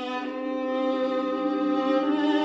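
Violin and vibraphone duo playing, the violin holding long bowed notes over the vibraphone.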